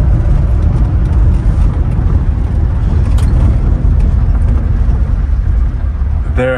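Low, steady rumble of a 1980 Chevy pickup truck on the move, engine and road noise heard from inside the cab.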